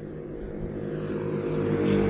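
A motor vehicle's engine running, a steady low hum with a haze of noise that grows gradually louder.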